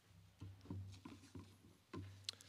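Faint rustling and several soft knocks of a book and papers being handled on a wooden lectern, over a low steady hum.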